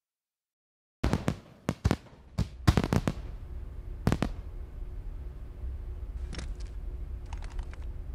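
About a second of silence, then a quick run of sharp cracks over a low rumble, thinning out to a few scattered clicks near the end.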